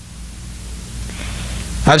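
Pause in a man's speech filled by a steady hiss and low rumble picked up by the microphone, growing louder, then his voice comes back in near the end.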